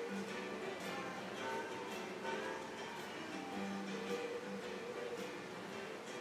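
Background music led by a plucked guitar, with held notes and a steady picking pattern.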